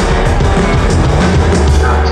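Live rock band playing loudly: electric guitar, bass and drums, with regular cymbal strokes over a heavy bass.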